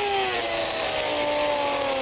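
Electric die grinder with a conical carving bit running steadily as it is dragged through a slab of ice, its whine slowly dropping in pitch, over a hiss of spraying ice chips.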